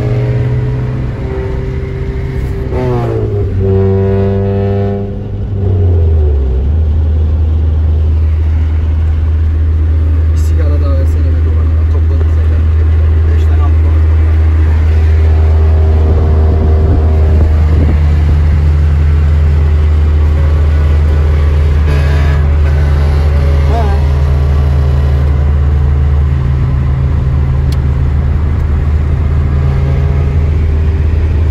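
Car engine noise at highway speed, heard from inside a moving car. In the first few seconds an engine revs up and then drops back, and after that a steady low drone of cruising holds.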